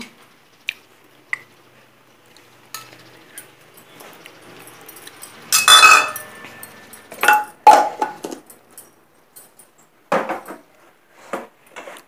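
Stainless-steel mixer-grinder jar and steel bowl clinking and knocking as dry mixed dal is poured in and the jar is handled. A louder metallic clatter comes a little past the middle, then a few more knocks near the end.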